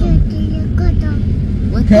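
Steady low rumble of a motor vehicle's engine and road noise while riding in street traffic.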